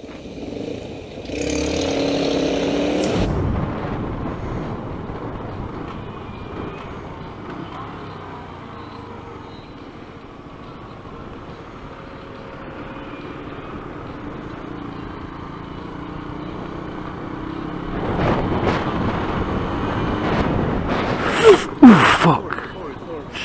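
Motorcycle riding in city traffic, with steady engine and road noise picked up by a helmet camera. There is a louder burst about a second in, and the sound builds again near the end with a few sharp loud peaks.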